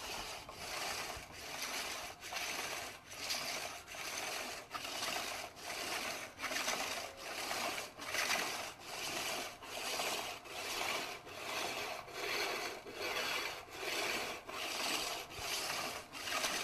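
A rough stone rubbed back and forth over a lacquerware object's dried coat of lacquer and bone-ash plaster, polishing it smooth: an even rasping scrape that swells and fades with each stroke, a little more than once a second.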